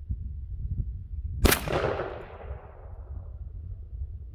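A single shot from a Mossberg 500 .410 pump shotgun firing a 3-inch shell, about a second and a half in, with a reverberating tail that fades over about a second.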